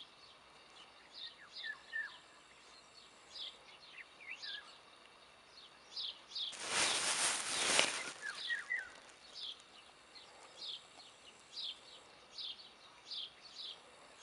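Small bird calling a short, high chirp over and over, about once a second, with a few lower falling chirps between. About halfway through, a loud rush of noise lasting over a second.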